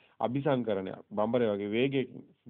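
Speech only: a man talking, in two phrases separated by a short break about a second in.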